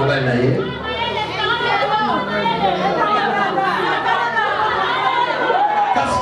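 Voices talking, several at once: speech and chatter only.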